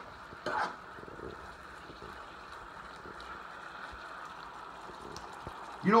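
Sliced beef and onions sizzling and simmering in the juices of an electric skillet, a steady frying hiss. A short clatter of the metal stirring ladle about half a second in.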